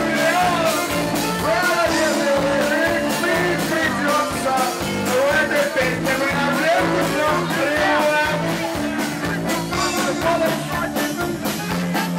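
Live band music: a man singing into a microphone over accordion, electric guitar and drums, with a steady beat.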